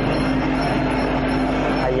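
Steady crowd din in a Muay Thai stadium during a bout, with a held tone running through it.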